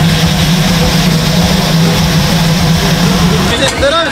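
Chicken kebab skewers sizzling on a hot flat-top griddle, a steady hiss over a constant low mechanical hum. It cuts off abruptly near the end and gives way to voices.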